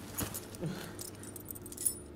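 A bunch of keys jangling as they are handled, light metallic jingles and small clicks, loudest shortly before the end.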